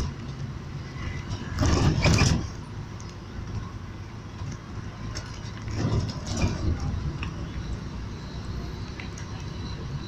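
Steady road and engine rumble of a moving vehicle, heard from inside the cabin. Two louder swells of noise come through, the stronger about two seconds in and another about six seconds in.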